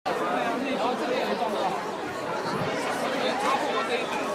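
Chatter: people's voices talking throughout, with no single clear line of speech.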